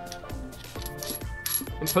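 A few light metallic clinks of a metal lightsaber hilt's pommel and grip being handled and fitted together, over steady background music.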